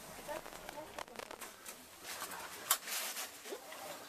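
Rustling and clicking close to the microphone, like cloth brushing against the camera, with one sharp crack about two and three-quarter seconds in and a brief hiss after it. A single Russian word is spoken faintly.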